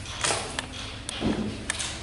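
Marker on a whiteboard: a few short taps and clicks and a brief scratchy stroke.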